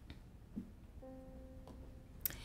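A single soft note played on a digital stage piano, starting about halfway through and held briefly before fading. It gives the starting pitch for a sung 'ooh' vocal exercise.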